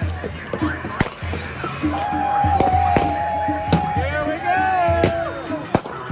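A crowd shouting, with several sharp bangs of police crowd-control munitions about a second, three seconds and five seconds in, and the sharpest crack just before the end.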